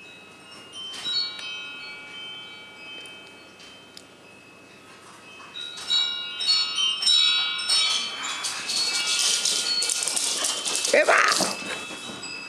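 Metal chimes tinkling in scattered clusters of ringing notes, about a second in and again from about six seconds, then a few seconds of dense jangling and rustling; a voice calls "Come on!" near the end.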